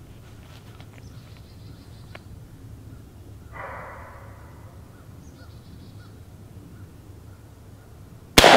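A quiet pause outdoors with a low steady rumble. There is one breathy exhale about three and a half seconds in, and faint bird calls repeat in the background in the second half.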